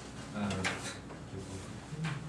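A man's murmured "mm-hmm, um" through a handheld microphone, with a short, sharp noise about half a second in.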